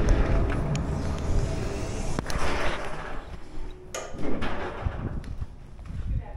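Wind rumbling on a handheld camera's microphone while walking, with handling knocks and a few sharp clicks. The rumble drops off about four seconds in.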